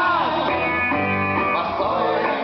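Live rock music: a man singing over an amplified electric guitar, his voice gliding at the start, then a note or chord held for about a second.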